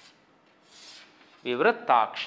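Chalk scraping on a chalkboard as a word is finished, with one longer rasping stroke a little under a second in. A man starts speaking near the end.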